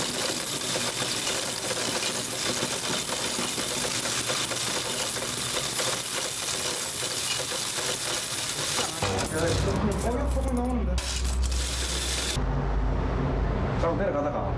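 Many coins rattling through a mechanical coin-counting and sorting machine in a dense, continuous clatter. About nine seconds in, the clatter stops and voices follow.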